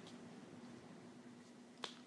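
Near silence: room tone, with a single short click shortly before the end.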